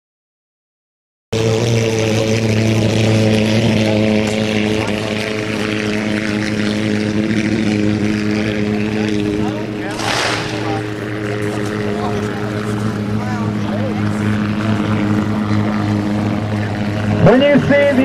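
Racing hydroplane engines droning at a steady pitch, several held tones together, starting suddenly about a second in. A brief rush of noise comes about halfway through, and a commentator's voice comes in near the end.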